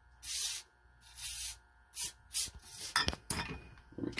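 Short hisses of gas vented from a beer bottle's neck as the thumb eases off the stopper of a DIY counter-pressure beer gun, letting pressure out so the beer keeps flowing in. There are about four hisses in quick succession, then a few light clicks near the end.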